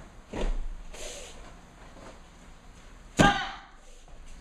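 Taekwondo kicks and strikes: a soft thud of a foot landing on the foam mat about half a second in, a swishing rustle of the uniform, then a loud sharp snap a little after three seconds as a technique is thrown.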